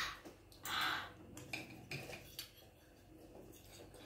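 Metal fork and spoon stirring and lifting instant noodles in broth in a plastic tub: two short scraping sounds in the first second, then a few light clicks, dying away near the end.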